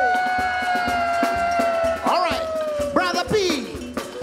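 Live band music led by an electric guitar: one long sustained lead note that slowly bends down in pitch, then quick swooping slides up and down near the end, over light percussion.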